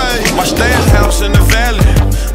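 Hip hop track with rap vocals and deep bass drum hits that slide down in pitch, over a skateboard rolling on concrete.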